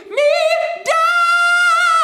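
A male singer singing a soprano-range high note in pure head voice. He slides up at the start, steps to a higher note about a second in and holds it with light vibrato.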